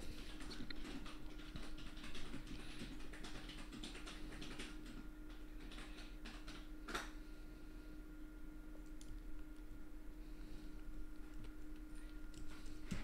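Computer keyboard keys clicking sporadically and faintly as shortcuts are pressed, with one sharper click about seven seconds in, over a faint steady hum.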